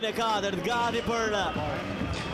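Speech only: a commentator talking continuously.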